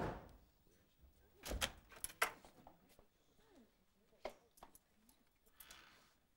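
A door being handled: a thud at the start, then a quick cluster of latch clicks and knocks about a second and a half in, and a few lighter clicks later.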